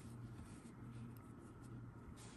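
Faint scratchy rustle of yarn being drawn over a metal crochet hook as stitches are worked, over a low steady hum.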